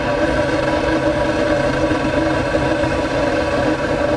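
Steady mechanical hum of the rig driving hot exhaust out of a long metal exhaust pipe, an even drone at one fixed pitch.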